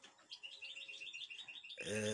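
European goldfinch twittering faintly: a quick run of short, high chirps, about ten a second, lasting over a second. A man's voice starts near the end.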